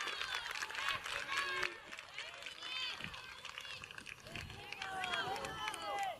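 Several women's high-pitched shouts and cheers overlapping, celebrating a goal, with scattered sharp clicks.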